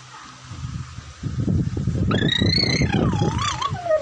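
A child's voice right at the phone's microphone: rough, low vocal noises starting about a second in, with a high, wavering squeal over them in the second half.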